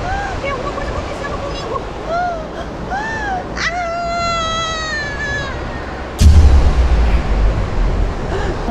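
A woman's short frightened cries, then one long scream that falls in pitch. About six seconds in comes a sudden loud low thump followed by a rumble.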